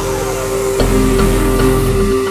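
Background music: an instrumental track with a bass line and a held note, its bass changing about a second in.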